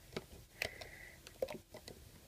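Faint, scattered clicks and light taps as a crochet hook loops rubber loom bands up over the plastic pegs of a Rainbow Loom, with a brief thin high squeak about half a second in.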